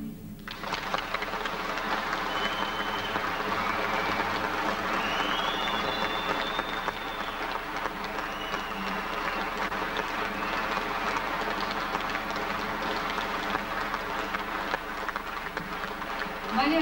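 Audience applauding steadily, with a few high whistles over the clapping.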